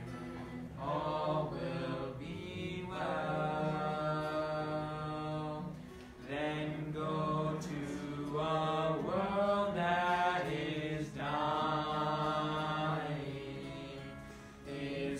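A group of voices singing a hymn together in sung phrases of a few seconds each, with long held notes and short breaths between lines.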